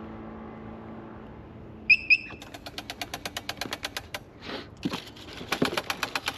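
A moped engine running steadily, then cutting out about two seconds in. Two short high beeps follow, then rapid, even ticking at about eight ticks a second.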